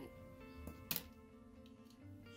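Faint background music with steady held tones, and one sharp click just under a second in.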